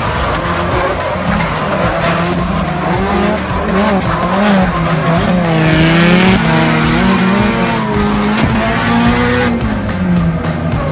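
Drift car engine revving hard at high rpm, its pitch rising and falling again and again with the throttle through a drift, with tyres squealing.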